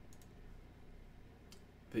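A few computer mouse clicks, a quick pair just after the start and one more about one and a half seconds in, over a low steady hum.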